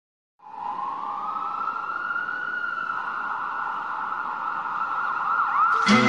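A siren-like wail that rises in pitch over about two seconds and then holds steady. Music with a beat comes in just before the end.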